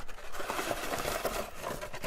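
Plastic-wrapped candies crinkling and rustling with small light ticks as a handful is set down on a tabletop.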